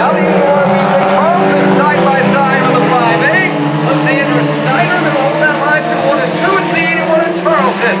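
Several sport compact race cars running laps on a dirt oval: a steady, continuous engine drone from the pack, with a voice talking over it.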